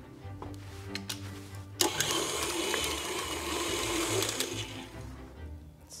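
A KitchenAid stand mixer's motor runs with its paddle beating choux pastry dough after a little extra beaten egg has gone in. It starts about two seconds in and runs for roughly three seconds before stopping.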